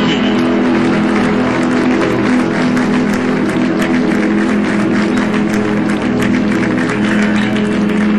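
Live band with electric guitar holding a sustained chord as a song ends, with the audience clapping from about a second in.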